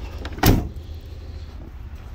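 The tailgate of a 2019 Ford F-150 being swung shut and latching with one loud thud about half a second in.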